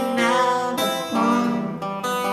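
Two acoustic guitars playing an instrumental passage of a slow English carol together, picked and strummed notes changing about every half second.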